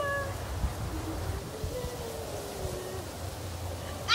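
A pet animal's cries: a brief high cry right at the start, then a long, wavering cry that slowly falls in pitch and lasts about a second and a half, over a low steady rumble.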